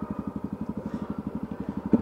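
Motorcycle engine running steadily at low revs while the bike rolls slowly, with an even, rapid pulse of firing strokes.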